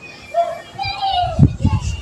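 Children's voices calling out and playing, not close to the microphone, with a few low thumps on the microphone near the end.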